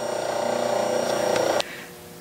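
Metal shaper's electric drive running with a steady machine hum and a faint high whine, cutting off suddenly a little before the end.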